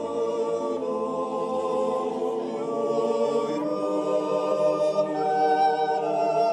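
Swiss folk men's choir singing a cappella, holding long sustained chords, moving to a new chord a little over two seconds in.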